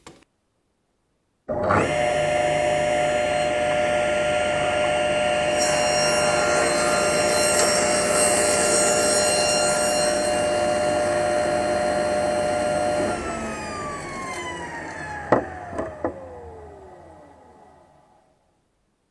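A tablesaw is switched on and runs at speed with a steady whine. For about five seconds it cuts through a wooden workpiece held in a box mitre jig, and the sound grows brighter and noisier. It is then switched off and winds down, the whine falling in pitch and fading, with two sharp knocks near the end.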